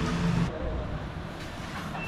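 Steady low rumble of road traffic heard in an open-air café; a man's voice trails off in the first half-second.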